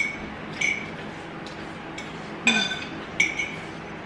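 Metal cutlery clinking against bowls while eating: about four short, sharp clinks, each with a brief ringing tone.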